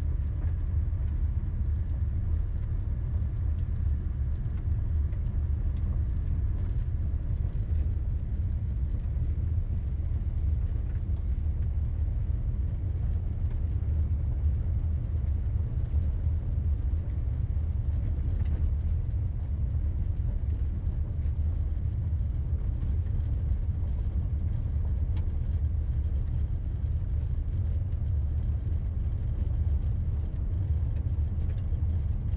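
Steady low rumble of a car driving along an unpaved lane, heard from inside the cabin.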